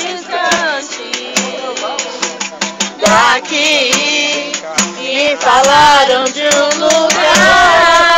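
A group of people singing a hymn together, with a pandeiro (jingled frame drum) beaten in a steady rhythm and hands clapping. Near the end the voices hold one long note.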